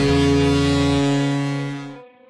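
A loud, steady, horn-like chord held for about two seconds. Its lowest note drops out about a second in, and the rest fades away at the end.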